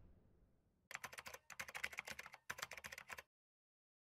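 Keyboard typing sound effect: three short runs of rapid key clicks about half a second apart, then it stops.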